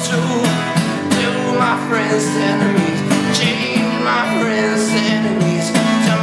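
Acoustic guitar strummed in steady rhythm, with a man singing through teeth wired shut after a broken jaw.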